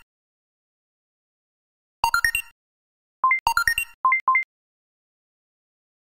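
Electronic alert chimes from a seismic-monitoring overlay: a quick rising run of four beeps about two seconds in, then a two-note up-beep, a second rising four-beep run, and two more two-note up-beeps, with dead silence between.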